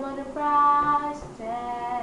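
A young female voice singing unaccompanied, stretching wordless held notes into a melisma. The strongest note starts about half a second in and is held for nearly a second, and a second note follows.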